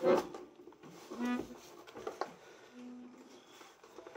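A button accordion being handled and turned over, with a few short pitched sounds, one at the very start and one about a second in, and a click near two seconds.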